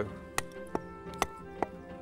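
Four sharp knocks, roughly half a second apart, of a pointed tool struck against a lump of shale to split it. Background music with held notes plays underneath.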